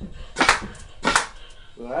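Two sharp puffs from a mouth-blown marshmallow gun, about two-thirds of a second apart, each one a shot fired at the wall.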